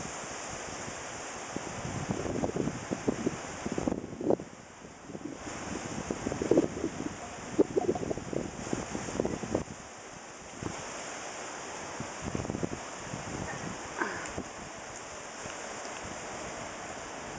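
Strong wind gusting over the microphone: an irregular rushing noise with repeated buffeting gusts, easing briefly about four seconds in and again around ten seconds.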